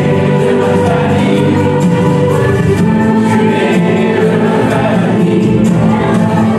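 A group of people singing together with music accompanying them; the music and voices run steadily throughout.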